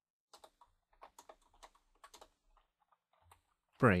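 Computer keyboard typing: a run of quick, irregular key clicks as code is entered, ending about three seconds in.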